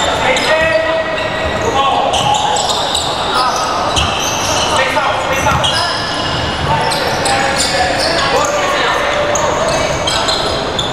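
Indoor basketball game in a large, echoing hall: a basketball bouncing on the wooden court, sneakers squeaking in short high chirps, and players calling out.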